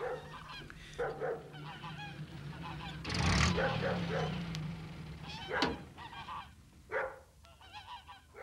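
Farmyard geese honking in a run of short, repeated calls, loudest about three seconds in, over a low steady hum.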